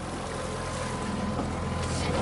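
Outboard motor running steadily as a low hum under a haze of wind and water noise on an open fishing boat.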